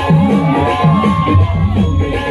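Hindi dance remix played loud for a stage dance, with a repeating bass line, and crowd noise over it.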